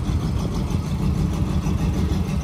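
1986 Oldsmobile Cutlass 442's V8 engine running low and steady as the car rolls slowly past.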